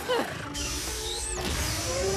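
Cartoon soundtrack: background music with comic sound effects, opening with a quick falling glide in pitch and a short high whistle about a second in.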